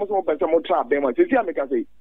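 A person talking steadily, breaking off shortly before the end.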